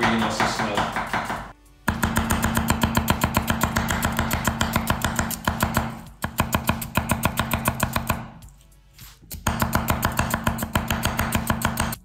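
A chef's knife slicing an onion on a wooden chopping board in quick, even strokes, about seven a second, pausing briefly twice. Background guitar music with steady low notes plays throughout.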